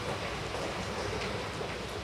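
Steady hum and hiss of running machinery in a thermal power station's plant hall, a continuous even noise with a low drone underneath.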